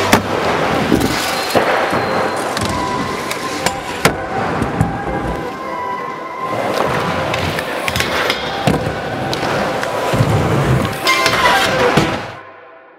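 Background music with skateboard sounds over it: wheels rolling on the park surface and sharp clacks of the board hitting and landing, the loudest about four seconds in.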